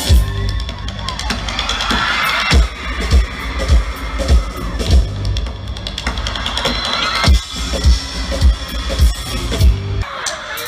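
Live rock band playing with a steady kick-drum beat, about one and a half beats a second, and a crowd cheering and screaming over it, swelling a couple of times.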